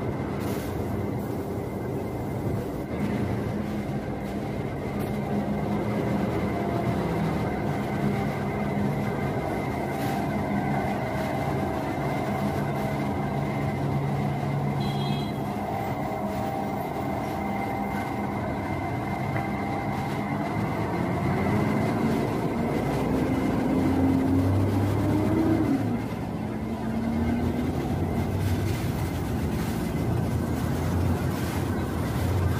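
Bus terminal traffic: city bus diesel engines running steadily, with one engine revving up, its pitch rising for a few seconds about three-quarters of the way through before it drops off suddenly.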